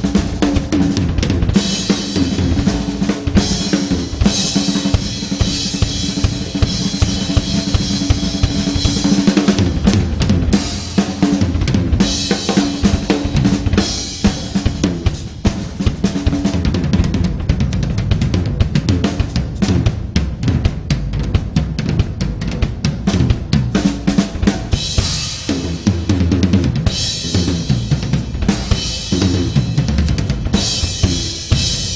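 Drum kit played live in a busy jazz-rock groove, with bass drum, snare and cymbals. The cymbal wash is heaviest in the first third and again near the end, and lighter in between.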